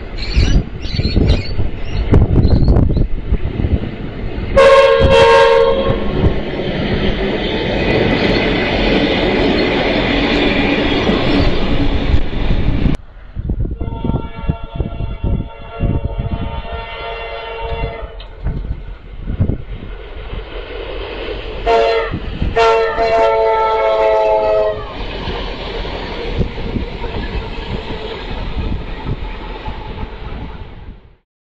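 Train passing along the line over the bridge, its wheels clattering and rumbling loudly, with a short multi-note horn blast about five seconds in. After an abrupt cut, a train horn sounds a long chord, then two further blasts.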